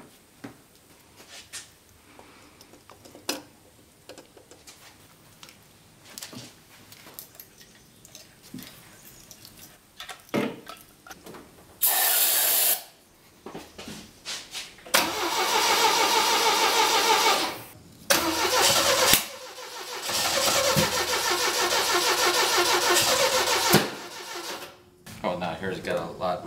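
Quiet clicks of a distributor being fitted, a short hiss of an aerosol can about halfway in, then the Saab Sonett's V4 engine cranking on the starter in two long bouts without catching. The owner puts the no-start down to the plug leads for cylinders three and four being swapped on the distributor cap.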